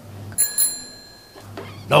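A single bright bell ding, starting suddenly and ringing out with several clear high tones that fade over about a second, likely an edited-in sound effect.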